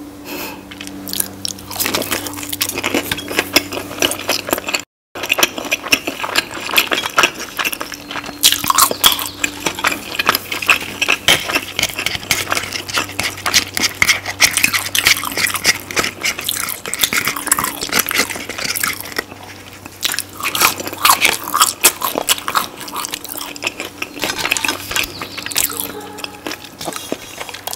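Close-miked biting and chewing of crispy breaded fried chicken dipped in creamy sauce: dense, irregular crunching and crackling with wet mouth sounds. The sound drops out briefly about five seconds in.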